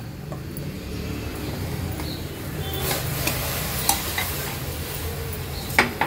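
Water at a rolling boil bubbling in a stainless steel pot on a gas burner, with a mound of rice flour just added to it. A few light clicks come about halfway through and again near the end.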